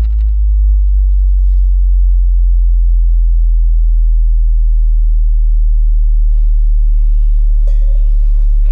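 Loud, steady, deep electronic sine tone, a low bass drone. About six seconds in, a faint higher, grainy layer of sound joins it.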